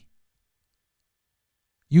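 A pause in a man's speech: dead silence, then his voice starting again near the end.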